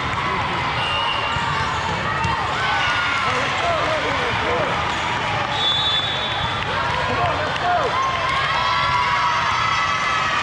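Echoing din of a busy indoor volleyball hall: many overlapping voices and volleyballs bouncing and being struck on the surrounding courts, at a steady level.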